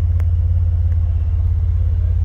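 The 2008 Jeep Wrangler Unlimited's Vortech-supercharged V6 idling, heard inside the cabin as a steady, low, pulsing rumble.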